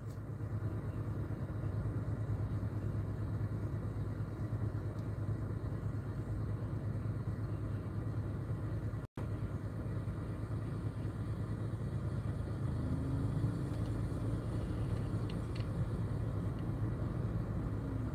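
Steady low rumble of a car heard from inside the cabin, cutting out for an instant about halfway through.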